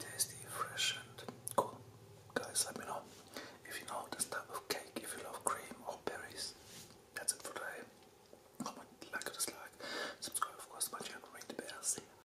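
A man whispering close to the microphone.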